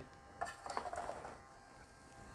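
A few faint, light knocks and rustles of a heavy figure being handled and set onto a motorized turntable's platform, bunched in the first second and a half, then near silence.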